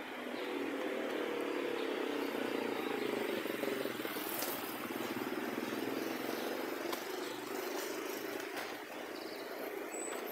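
Street traffic: a steady engine-and-road noise that swells over the first few seconds and slowly eases off.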